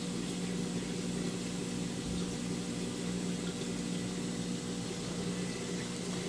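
Steady hum of aquarium pumps with water circulating: a low, even drone under a constant watery hiss.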